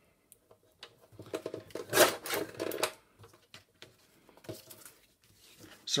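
Paper sliding and rustling against a paper trimmer's bed as the sheet is handled: one rustle lasting about a second and a half, loudest about two seconds in, followed by a few faint taps.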